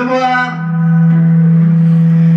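Backing music holding one low, steady note between sung lines. The end of a male vocal phrase trails off in the first half second.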